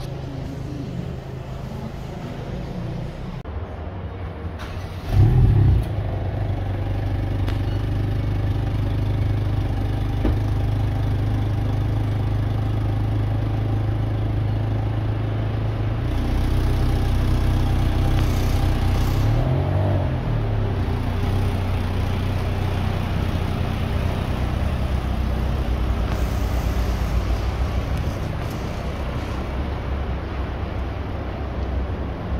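Hyundai i20 N's 1.6-litre turbocharged four-cylinder engine and exhaust heard from behind the car as it pulls away slowly. A brief loud flare of revs about five seconds in is the loudest moment. The engine then runs steadily at low speed, with a short rev blip that rises and falls around twenty seconds in.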